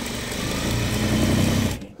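Juki straight-stitch sewing machine running at speed, sewing a seam at a short stitch length, then stopping suddenly just before the end.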